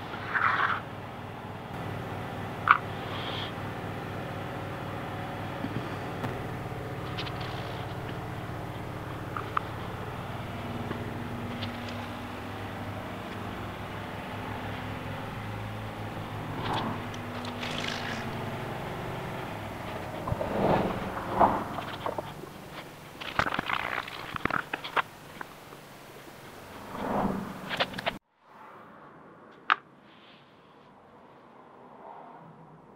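A steady machine-like hum with several held tones, over which come scattered small taps, clicks and rubbing as hands roll modelling clay and press it onto a knife handle on a cutting mat; the handling sounds grow busier late on, and everything drops away sharply near the end.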